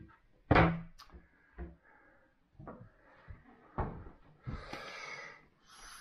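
A kitchen wall-cupboard door shut with one loud knock, followed by a few lighter knocks and a short rustle.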